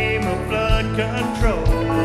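Live country band playing a song: acoustic and electric guitars over drums, with a kick drum beat about once a second.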